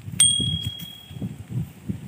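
A single bright metallic ding, struck once and ringing clearly for about a second, over soft footsteps on dry field stubble.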